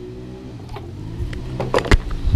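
Small motorbike engine running steadily and drawing nearer, louder toward the end, with a couple of sharp knocks near the end.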